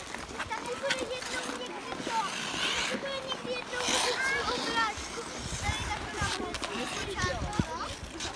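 Indistinct voices of children and skaters, over the scraping of ice-skate blades and the rolling of a pram's wheels across the ice, with more low rumble in the second half.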